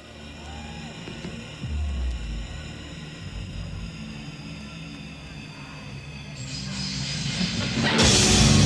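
A live rock band plays a quiet, held passage with no singing: low sustained bass notes, a heavy low note about two seconds in, and steady keyboard tones above. A hissing swell builds over the last two seconds toward a loud full-band entry.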